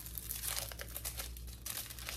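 Plastic wrapping crinkling in the hands as a shrink-wrapped grill cleaning stone is handled: a quick, continuous run of small crackles.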